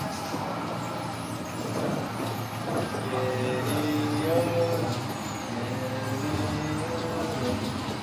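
Coin-operated kiddie train ride running, with a steady low motor hum. In the middle a simple electronic tune of single held notes, stepping up and down, plays over it.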